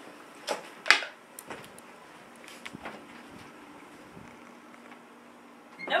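Two soft knocks about half a second apart near the start, then a few faint clicks over a quiet room background.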